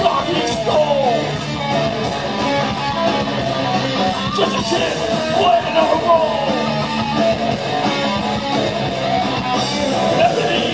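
Live rock band playing loud, with distorted electric guitar over drums and steady cymbal hits about three times a second.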